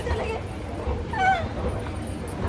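A woman's short, high-pitched laugh about a second in, over a low steady hum.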